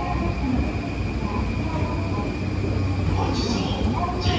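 A train running at a station platform, heard from the escalator: a steady low rumble, with a high hissing or squealing noise coming in near the end.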